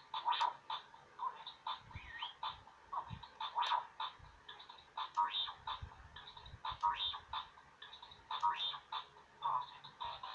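An R2-D2 Bop It toy's speaker playing a rapid string of R2-D2 beeps, chirps and warbling trills, with one rising whistle about two seconds in.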